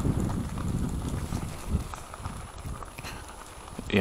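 Motorcycle-tyred e-bike rolling over a gravel track, tyres crunching with irregular knocks and rattles from the bike. The rumble fades steadily as the bike slows down.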